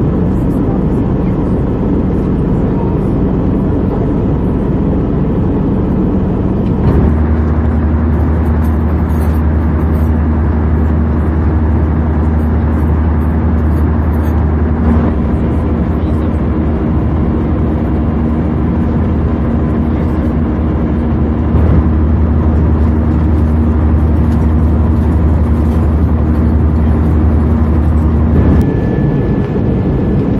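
Steady cabin noise of an Airbus A320-214 in cruise, from the engines and the airflow, heard from inside the cabin over the wing. A low hum steps up about seven seconds in. Near the end the sound changes, and a thin high steady tone joins.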